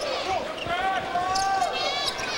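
A basketball dribbled on a hardwood court, with sneakers squeaking in short rising and falling chirps as players cut.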